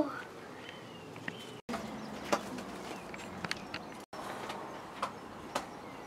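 Quiet outdoor background with faint bird calls and a few soft clicks, broken twice by brief dead-silent gaps from edit cuts.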